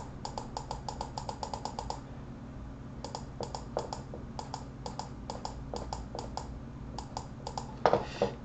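Rapid, even clicking at a computer, about ten clicks a second for the first two seconds, then sparser, irregular clicks, over a steady low hum.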